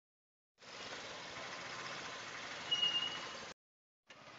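Steady outdoor background noise that starts about half a second in and cuts off suddenly just before the end, with a brief high tone a little before three seconds.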